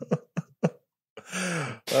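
Brief hesitant voice sounds, then a breathy voiced sound with a falling pitch a little past halfway, from a person on a podcast call.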